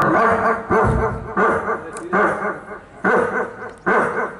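A person imitating a dog barking into a microphone with hands cupped over the mouth: about six barks, one roughly every three-quarters of a second.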